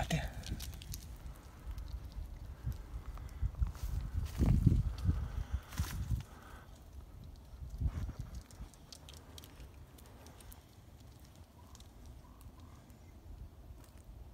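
Scraping, rustling and knocking of climbing on the bark of a large tree limb, with a run of heavy low thumps about four to six seconds in and another near eight seconds, quieter after that.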